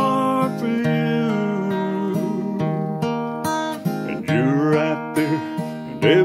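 Acoustic guitar strummed through an instrumental passage of a country song, with steady held chords.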